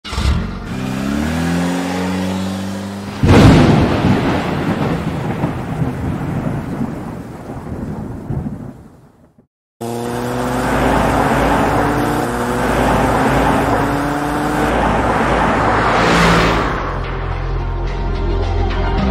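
Cinematic sound effects: a car engine revving up, then a sudden loud thunder-like boom that dies away over several seconds. After a brief silence the engine note rises again under a rushing noise that swells to a peak near the end.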